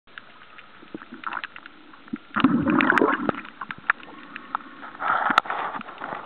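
Underwater water noise: a low hiss with scattered sharp clicks and crackles, and two louder rushes of water about two and a half seconds in and again around five seconds.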